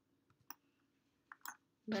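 Computer mouse clicks while selecting vertices in a 3D modelling program: one sharp click about half a second in, then two more in quick succession near the end.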